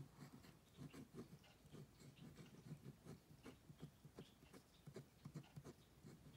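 Near silence with the faint, irregular scratching of a pen drawing short strokes on paper.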